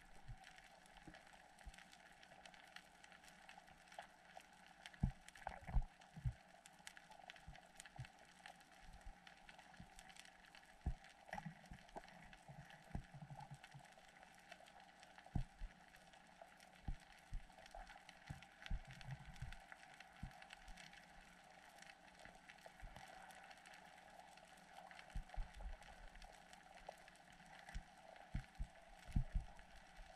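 Faint underwater ambience picked up through a waterproof camera housing: a steady hiss with scattered low thumps and sharp clicks.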